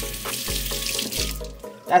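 Water running from a kitchen tap as a green plantain is rinsed under it, with music playing underneath. The water stops about one and a half seconds in.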